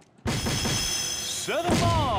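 Electronic award effect from a DARTSLIVE soft-tip dartboard, triggered by a throw: it bursts in loudly a quarter second in, with bright steady tones and a falling sweep near the end.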